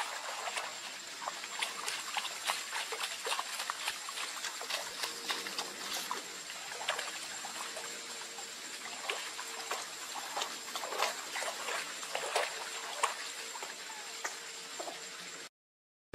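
Outdoor field ambience: a steady background hiss with a faint, high, steady tone, dotted throughout with many short clicks and chirps.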